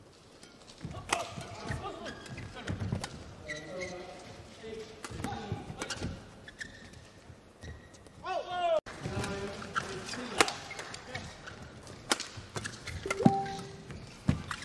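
Badminton rally: a run of sharp racket hits on the shuttlecock, with court shoes squeaking on the floor, including one longer squeal about eight seconds in.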